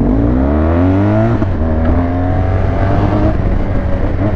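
Large motorcycle's engine accelerating from a standstill. Its pitch climbs for about a second and a half, drops at a gear change, then climbs again more gently.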